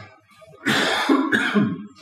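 A person coughs, a throaty cough lasting about a second that starts about half a second in.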